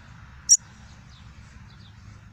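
Yellow-bellied seedeater (papa-capim) giving one sharp, very short high chirp about half a second in, followed by a few faint short high notes.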